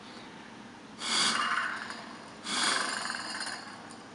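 Two puffs of breath blown hard into a small tube in the handle pivot of a wooden puzzle box, the first about a second in and the second about a second and a half later, each lasting about a second and fading away. The air spins a fan inside that draws back the latch and unlocks the box.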